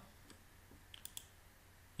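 Near silence, with a few faint computer mouse clicks about a second in.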